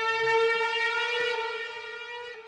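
A conch shell (shankh) blown in one long held note, rich and horn-like, fading away over the second half as the devotional piece closes.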